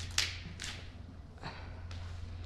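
Footsteps on a debris-strewn floor: a sharp step about a quarter second in, a softer one shortly after, then fainter steps, over a steady low hum.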